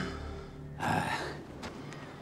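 Low orchestral music fading out, and about a second in a single short, gasping breath from a man.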